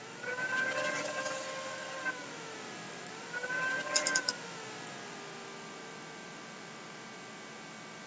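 Two drawn-out vocal sounds, each held on one steady pitch, the first about two seconds long and the second about a second. A quick run of three or four computer mouse clicks comes about four seconds in. A faint steady whine runs underneath.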